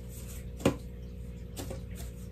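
A single sharp short click about two-thirds of a second in, with a fainter one near the end, over a steady low hum.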